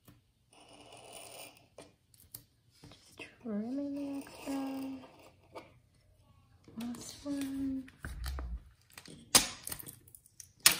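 A craft knife blade scratching as it trims clear laminating film on a card folder, then brief wordless vocal sounds. Near the end comes a low thump and a loud, sharp crackle of the laminated plastic sheet being handled.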